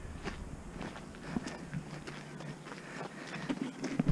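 Footsteps of people walking on an unpaved earth and gravel path, a run of irregular steps.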